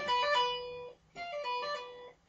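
Low-gain electric guitar playing a tapped diminished-seventh arpeggio, tapped notes pulled off to lower frets. It comes in two short phrases, each cut off abruptly, with a brief silence about a second in.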